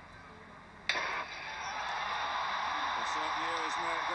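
A starting pistol fires about a second in. Stadium crowd noise follows at once and keeps swelling, and a commentator's voice comes in near the end.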